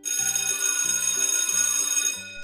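Alarm clock bell ringing sound effect, a loud continuous jangle that starts suddenly and stops after about two seconds, signalling that the quiz countdown has run out.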